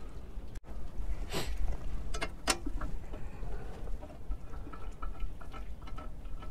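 Scattered light clicks and scrapes of hands handling metal parts at a sawmill's power feed, with a steady low wind rumble on the microphone underneath.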